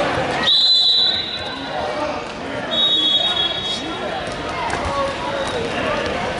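Referee's whistle blown in two steady, high blasts of about a second each: one about half a second in, the second about two seconds later. Voices echo in a large gym underneath.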